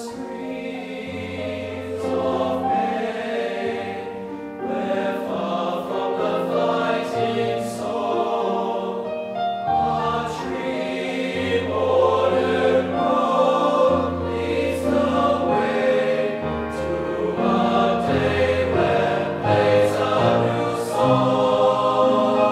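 Male voice choir singing a TTBB (tenor, tenor, baritone, bass) choral piece in sustained chords, growing gradually louder.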